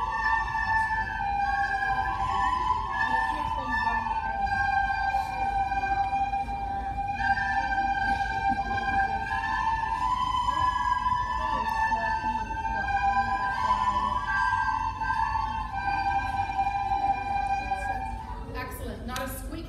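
A class of beginner children playing plastic soprano recorders in unison: a slow tune of held high notes stepping up and down, each lasting a second or two. The playing stops at the very end.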